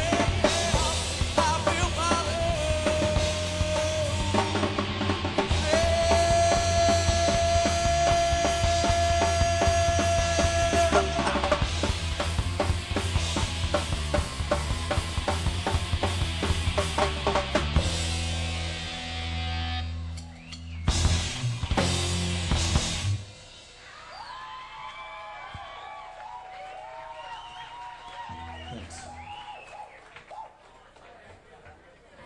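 Live rock band (singer, electric guitar, bass guitar and drum kit) playing loudly, with a long held note in the middle. The song ends about three-quarters of the way through with a few final hits, followed by quieter crowd noise and voices.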